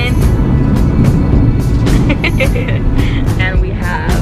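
Steady low rumble of a car cabin on the move, with music playing over it and brief indistinct voices about halfway through.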